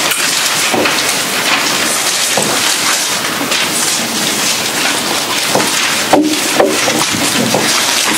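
Steady, loud hiss like heavy rain or background noise, with a few faint knocks and rustles.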